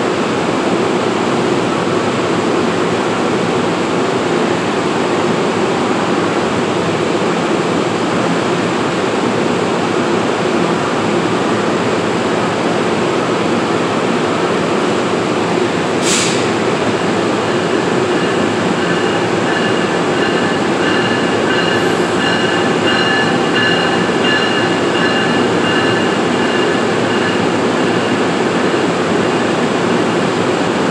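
Steady loud running noise of an NJ Transit bilevel commuter train standing at an underground station platform. About 16 seconds in there is a brief sharp hiss, and from about 18 seconds a faint high-pitched whine of several tones runs for about ten seconds.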